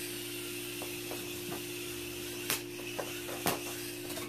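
Small toy drone running with a steady hum, with scattered light clicks and two sharper knocks about two and a half and three and a half seconds in, typical of the drone bumping into things after the hover button is pressed.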